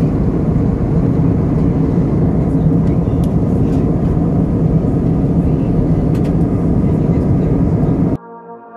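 Steady low rumble of a jet airliner's cabin noise in flight: engine and airflow noise heard from inside the cabin at a window seat.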